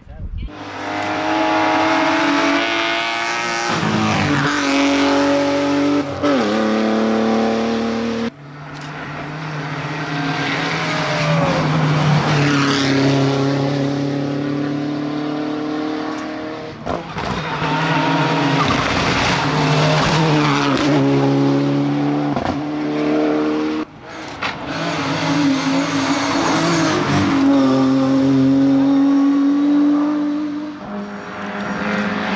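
Hillclimb race cars, one after another, accelerating hard up a mountain road, their engines revving high and dropping in pitch at gear changes. The sound cuts abruptly between about four separate cars.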